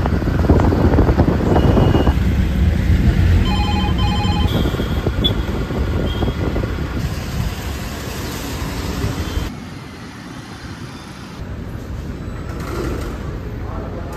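Auto-rickshaw engine and street traffic noise, with a quick run of beeps about three seconds in. Near the end the traffic noise drops away suddenly, leaving a quieter, even room hum.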